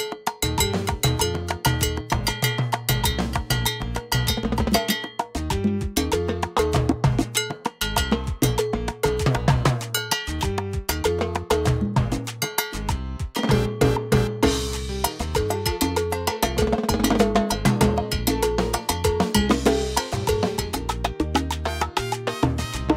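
Timbales played with sticks in a rapid salsa pattern along with a salsa track carrying a bass line and other pitched instruments. A bright cymbal wash comes in about two-thirds of the way through.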